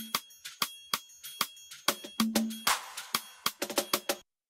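AI-separated drum stem from Logic Pro 11's stem splitter playing back: sharp drum and percussion hits in a steady groove, a short noisy cymbal-like splash about two-thirds through and a quick run of hits near the end. A slight flanger-like artefact from the separation remains in the stem.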